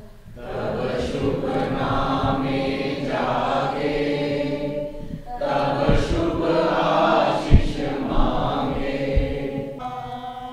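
A group of people singing together, holding long notes. A sharp low thump breaks in about three-quarters of the way through.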